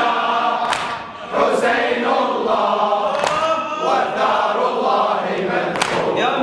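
A congregation of men chanting a Shia latmiya mourning refrain in unison, with several sharp slaps of hands striking chests in the latm rhythm.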